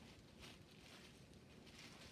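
Near silence: room tone with faint rustling of a cloth pouch and its contents being handled.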